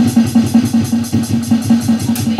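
Drum kit played in a fast, even beat: cymbal strokes about eight a second over repeated low drum hits.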